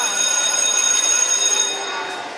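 Electric school bell ringing steadily, a high, rattling ring that stops just before the end, signalling the start of classes.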